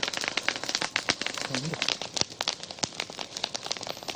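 Field sound of dense, irregular crackling and clicking, with a person's voice heard faintly and briefly about one and a half seconds in.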